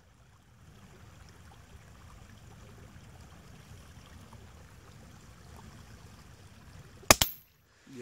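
A single rifle shot, one sharp crack about seven seconds in after a stretch of faint background. The recording drops out to silence for about half a second right after the shot.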